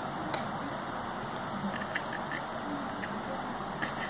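Steady background hiss with a few faint soft clicks and rustles, like hands moving in cotton bedding, and a faint murmur of voices around the middle.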